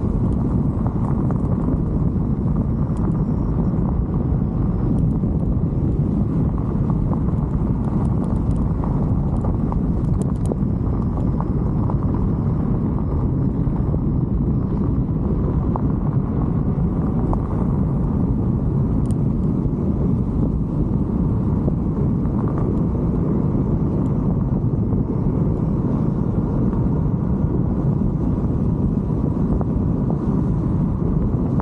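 Steady rumble of wind on the microphone and tyres rolling over rough, cracked pavement as the bike rides along, with scattered light clicks and rattles.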